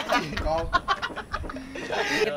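A group of young men laughing together in quick, cackling pulses.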